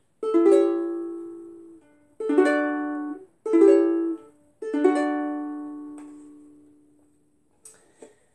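Ukulele strummed four times, a chord every second or two, each ringing and fading; the last chord is left to ring out slowly.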